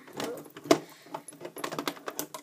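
Small clicks and ticks of a hook and rubber loom bands working on the pegs of a plastic loom: one sharp click about two-thirds of a second in, then a run of lighter ticks.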